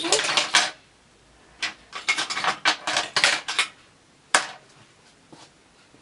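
Metal needles of a double-bed knitting machine clicking as stitches are transferred with a hand transfer tool (decker) and needles are pushed along the needle bed for crown decreases: quick runs of light metallic clicks, a pause about a second in, another run of clicks, then one sharp single click a little past four seconds in.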